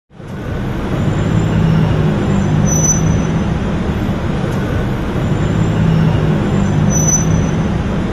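Road traffic: steady vehicle noise with an engine hum, fading in at the start, with two brief faint high-pitched squeaks about three and seven seconds in.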